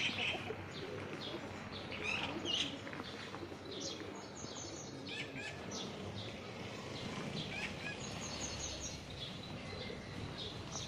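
Small songbirds chirping, short high calls scattered throughout, some in quick runs of repeated notes, over steady outdoor background noise.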